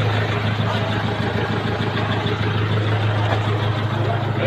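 Pickup truck engine idling close by: a steady low hum that holds level throughout.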